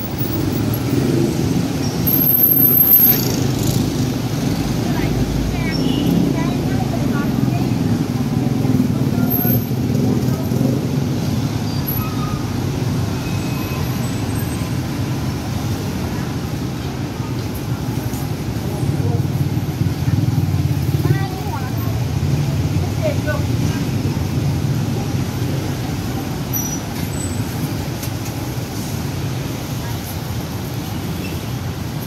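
Steady traffic noise from cars and motorcycles on a busy city road, mixed with the voices of people talking nearby.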